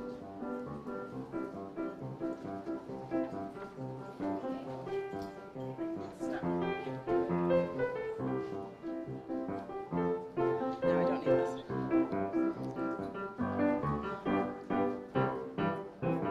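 Piano music played continuously, a steady run of notes and chords as background music.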